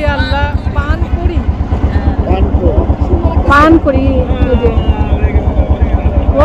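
A river boat's engine running with a low, fast, even beat, with a few people's voices over it.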